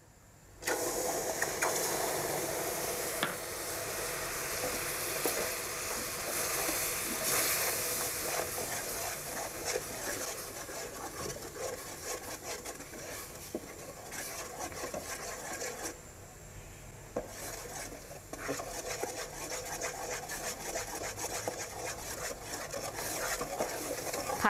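Light soy sauce poured into hot caramelized coconut sugar, which bursts into a loud sizzle about half a second in. The mixture keeps sizzling and bubbling as a metal spoon stirs and scrapes around the pot, easing gradually.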